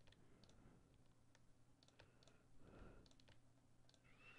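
Near silence: a faint low hum with a few faint, scattered clicks of a computer mouse.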